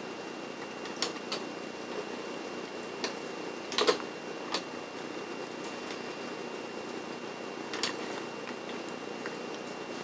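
Quiet room hiss with a faint steady high tone, and about six short faint clicks scattered through: computer clicks as values are set in an on-screen dialog.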